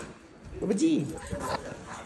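A voice calling out 'Baba ji' once, with a rising-then-falling pitch, and light rustling from the handheld camera around it.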